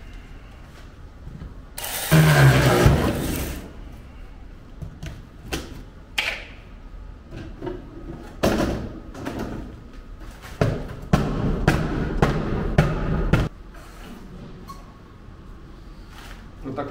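Demolition of a terrarium's decorative backdrop: irregular bursts of cracking, crumbling and scraping. The loudest burst comes about two seconds in, and a longer run of scraping and breaking lasts from about eight to thirteen seconds in.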